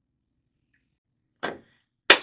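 A single short, sharp sound about one and a half seconds in, fading quickly, against near-quiet room hum.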